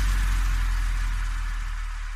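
The closing tail of an electronic dance track: a sustained deep bass drone with a faint hiss above it, fading steadily out.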